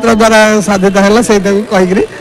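Speech only: a man talking into a microphone.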